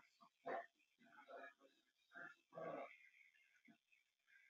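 Near silence, broken by a few faint, brief sounds scattered through the pause.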